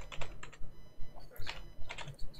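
Typing on a computer keyboard: a quick run of keystrokes, a short pause, then a few more near the end.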